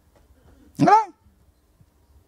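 A man's single emphatic spoken word, "Voilà", into a handheld microphone, rising then falling in pitch, with little else around it.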